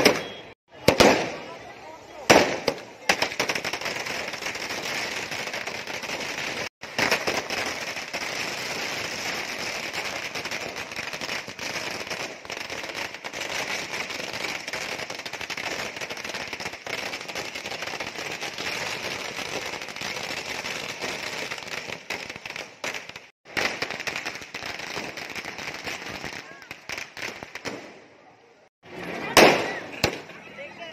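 Firecrackers and fireworks going off: a few loud bangs in the first three seconds, then a long run of rapid crackling for about twenty seconds, then more loud bangs near the end.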